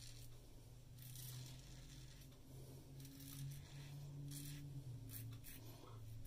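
Double-edge safety razor with a Voskhod blade scraping through lathered stubble in a few soft, faint strokes, on an against-the-grain pass. A low steady hum runs underneath.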